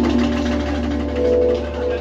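Live jazz band playing: a saxophone holding long sustained notes over a steady low bass note, with light percussion.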